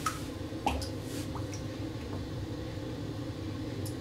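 Faint water splashing and trickling as an upside-down RC boat hull is lowered into bathtub water and floods through the holes drilled into its flood chamber, with a few small splashes near the start, over a steady low hum.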